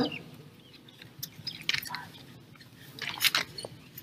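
A pause in a woman's speech at a microphone. It holds only a few faint, short breathy mouth noises, the loudest near the end, just before she speaks again.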